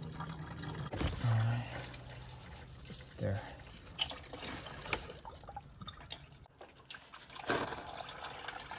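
Used engine oil trickling from the oil pan's drain hole into a plastic drain bucket, a steady liquid splatter. A few light clicks of hand work on the oil filter as it is loosened.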